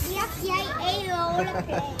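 Children's voices chattering and exclaiming, with no clear words.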